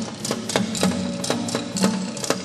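Dance music for a Moro folk dance: sharp percussive clacks in an uneven rhythm, about three or four a second, over a low sustained tone.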